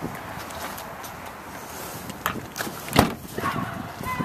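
Shuffling steps and handling noise over a steady background hiss, then one sharp thump about three seconds in: the rear liftgate of a 2012 Chevrolet Traverse being shut.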